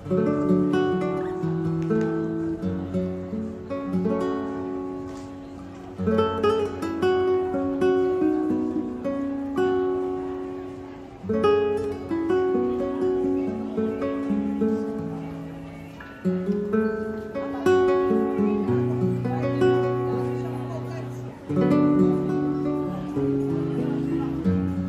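Background music on acoustic guitar, plucked and strummed, in phrases that start afresh about every five seconds and fade before the next.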